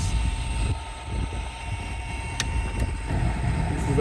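Low, steady rumble from an outdoor recording of line work played back over a video call, with a single sharp click a little past the middle.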